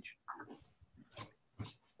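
A pause between speakers: near silence with a few faint, brief sounds.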